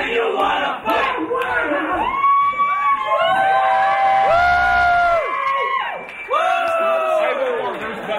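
A group of voices closing an unaccompanied sea shanty with a loud, drawn-out group shout. A burst of quick shouted words gives way about two seconds in to several long held notes at different pitches, overlapping and dropping out one by one.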